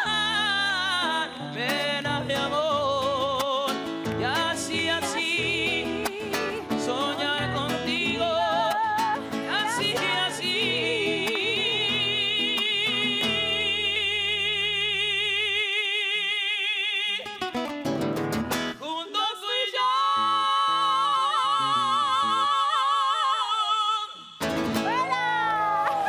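A man singing with heavy vibrato to his own strummed acoustic guitar, joined by a woman's voice. The guitar drops out about two-thirds of the way through, leaving the voices on long held notes, with one long held note near the end.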